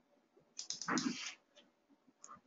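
A quick run of computer keyboard keystrokes about half a second in, running straight into a brief, louder sound lasting about half a second.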